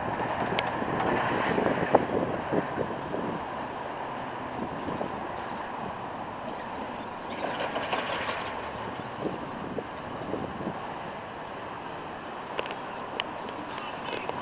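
Florida East Coast Railway intermodal freight train running on past: a steady rumble with scattered wheel clicks, slowly fading.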